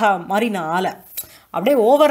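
A woman's voice speaking in a lecture, with a pause of about half a second in the middle broken by one short click.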